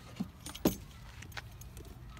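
Faint jingling and clicking of a bunch of keys being handled, in a few short bursts, the loudest a little over half a second in.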